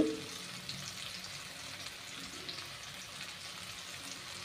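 Chopped shallots and tomatoes frying in oil in a kadai, a faint, steady sizzle with a few small crackles.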